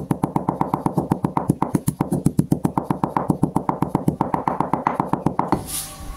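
Stone pestle pounding dried cloves in a stone mortar: rapid, even strikes, about nine a second, grinding them fine. The pounding stops about half a second before the end.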